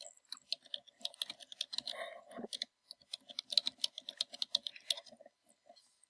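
Computer keyboard typing a short phrase: quick keystrokes in two runs with a brief pause in the middle.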